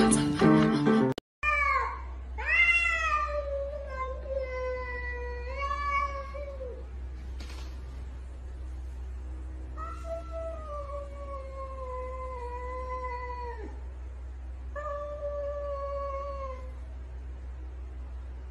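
Piano keys played for about a second, then cats facing off and yowling in long, wavering, drawn-out calls, several close together over the first few seconds, then two more long yowls, over a steady low hum.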